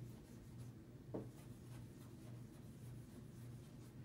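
Faint scratching of a marker writing on a flip chart, with one slightly sharper stroke about a second in, over a low steady hum.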